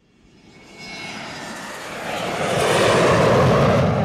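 Military jet engines, a rushing roar that swells from silence to loud over the first two to three seconds and then holds steady.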